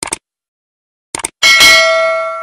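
Subscribe-button animation sound effects: a quick double mouse click, another double click about a second later, then a bright bell chime that rings on and slowly fades.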